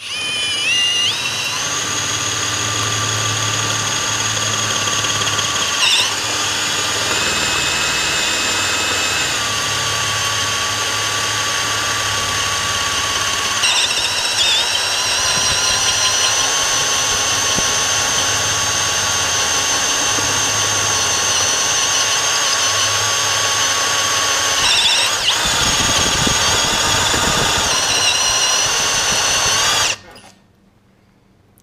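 A Champion step bit, driven by a cordless drill, squealing loudly and steadily as it cuts into stainless steel sheet with cutting fluid. The pitch of the squeal shifts a few times as the bit steps to larger diameters, and the sound stops abruptly at the end.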